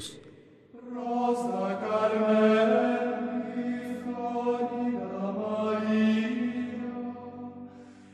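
A slow sung chant of long held notes, beginning about a second in and fading out near the end.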